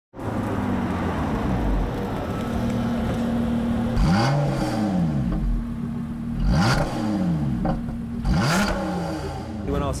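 Lotus Exige S Roadster's supercharged 3.5-litre V6 engine revving hard as the car is driven. Its pitch falls away and then climbs sharply over and over, with three loud surges about four, six and a half and eight and a half seconds in.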